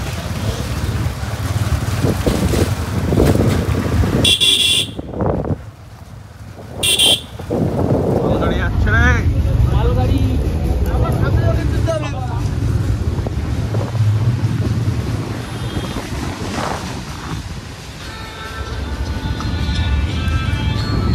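Motorcycle and road noise running, with two short vehicle horn honks about four and a half and seven seconds in.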